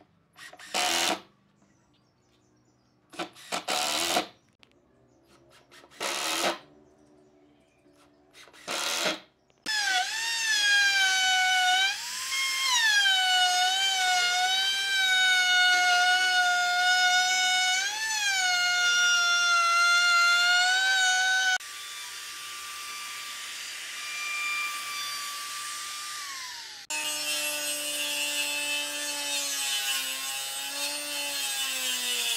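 Cordless impact driver driving wood screws into pine in several short bursts, followed by a handheld trim router running along a pine rail, a steady high whine whose pitch dips under load and recovers. Near the end a quieter steady tone falls away and a lower machine hum starts.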